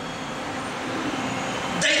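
Steady background noise in a hall, an even hiss with a faint low hum, during a pause in speech; a man's voice starts a word near the end.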